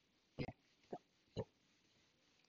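Board duster rubbing across a whiteboard: three short, faint strokes about half a second apart.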